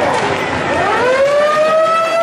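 Ice rink goal horn sounding after a goal: one long tone that starts a little under a second in, slides up in pitch and then holds steady.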